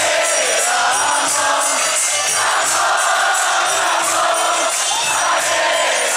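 Devotional kirtan played over loudspeakers: a large crowd singing a chant together, with sung melody lines and hand cymbals or jingles keeping a steady beat.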